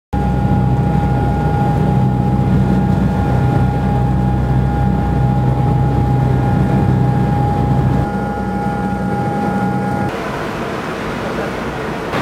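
A steady mechanical drone: a low rumble with a constant high tone over it, which drops away about eight seconds in and gives way to an even hiss about ten seconds in.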